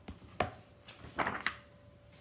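Hardcover picture book being handled and opened: a sharp tap about half a second in, then a short rustle of the cover and pages.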